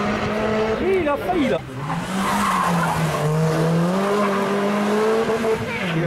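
Rally car engine running at high revs on a special stage, its pitch dipping sharply about one and a half seconds in, then climbing back and holding before falling again near the end.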